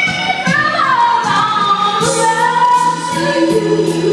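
Two women singing a duet into microphones over an instrumental backing track with a steady beat, holding long, sliding notes.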